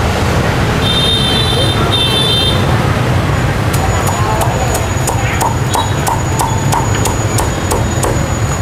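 Cleaver chopping through crisp-skinned Vietnamese roast pork (heo quay) onto a wooden chopping block, a steady series of sharp chops about two to three a second starting about halfway in. Before that come two short electronic beeps, over a steady rumble of street traffic.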